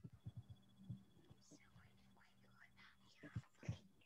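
Near silence on an open video call: faint, indistinct whispering or distant voices, a few soft knocks, and a low steady hum with a thin high tone behind.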